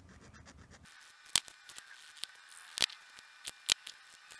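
Faint scratchy rubbing of an alcohol-dampened cotton wad, held in metal tweezers, being scrubbed over a Samsung Galaxy S9's earpiece grille. A handful of sharp clicks sound as the tool works against the phone.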